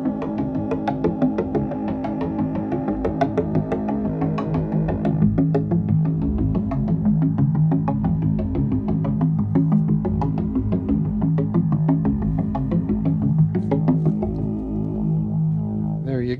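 Buchla-format modular synthesizer, a Keen Association 268e Graphic Waveform Generator, playing a sustained drone with a fast stream of short sequenced notes over it. The drone's timbre shifts as the wave shape changes.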